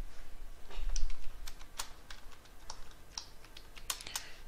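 Computer keyboard typing: a run of irregular keystroke clicks as a terminal command is typed.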